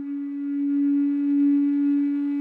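Native American flute holding one long, steady low note that swells gently in loudness.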